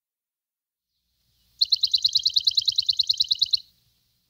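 Bird-call sound effect: a rapid, even trill of high chirps, about twelve a second, lasting about two seconds and starting a little past the middle of the first half.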